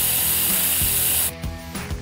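Spray sound effect: a steady hiss of aerosol spray that cuts off suddenly a little over a second in, leaving soft background music.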